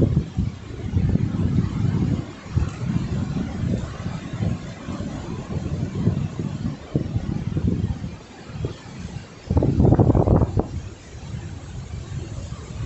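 Wind buffeting the phone's microphone in irregular low rumbling gusts, with a strong gust at the start and a louder, longer one about ten seconds in.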